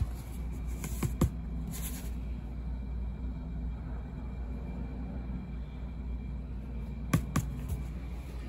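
A few light clicks and taps from handling a clear plastic tub of sifted black powder granules, over a steady low hum. Two clicks come about a second in and two more near the end.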